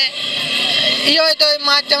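A man speaking into an interview microphone, with steady street noise behind. In a pause of about a second at the start, only that background haze is heard before the speech resumes.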